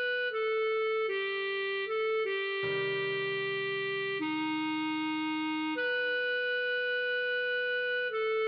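Clarinet playing a slow melody in long, steady held notes, note by note, over a low accompaniment whose chord changes about two and a half seconds in.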